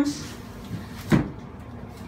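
A single short knock a little over a second in, from equipment being handled.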